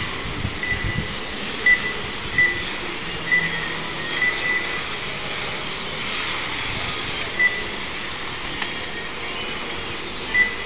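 Several 1/12-scale electric RC pan cars running on the track, their motors and gears making high whines that rise and fall in pitch as they speed up and slow down through the corners. Short electronic beeps come irregularly, about once a second.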